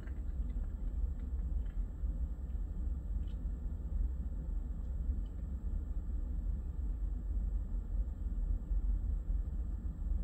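Freight train of covered hoppers and tank cars rolling past at a distance: a steady low rumble with a few faint clicks.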